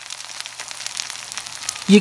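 Sausages sizzling as they fry in a skillet: a steady hiss with fine crackling pops. A voice begins just before the end.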